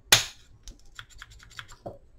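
Plastic housing clip of a Ridgid Gen5 drill's brushless motor assembly snapping apart with one sharp snap, followed by a run of small plastic clicks and a duller knock near the end as the parts are handled.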